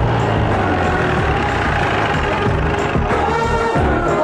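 Background film music over the steady running of a Jeep's engine.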